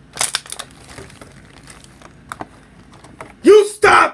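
A thin plastic bag crinkling and rustling as it is handled, sharpest in the first half-second, with a few faint rustles after. Near the end a voice calls out loudly.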